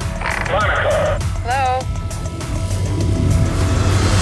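Trailer soundtrack: a low rumbling score that builds in loudness toward the end, with two short, pitch-bending vocal sounds in the first two seconds.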